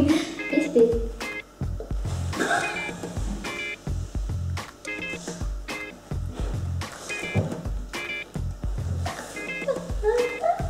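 Background music with a steady beat and a short high figure repeating throughout.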